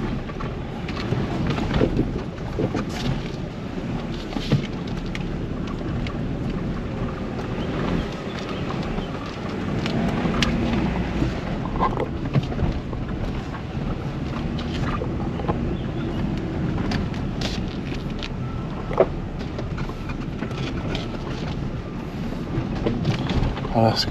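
Small car crawling along a rutted dirt forest track, heard from inside the cabin: a steady low engine-and-tyre rumble with frequent short knocks and rattles as it rolls over bumps and potholes.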